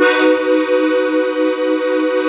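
Hohner Corona III diatonic button accordion sounding a B major chord on the treble buttons, held steadily on the bellows pull. It starts suddenly and has a slight beating waver in the tone.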